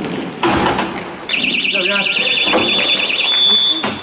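A referee's pea whistle blown in one long, trilling blast of about two and a half seconds, starting about a second in, over players' voices. A sharp knock comes just before it.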